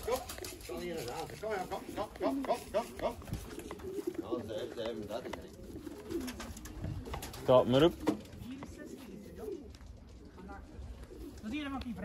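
Domestic racing pigeons cooing in their lofts: many short, overlapping coos throughout, with one louder burst about seven and a half seconds in.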